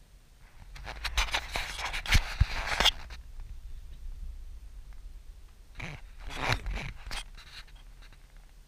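Close scratchy scraping and rustling in two bursts, the first about a second in and lasting about two seconds, the second a shorter one near six seconds, over a low steady rumble inside the car.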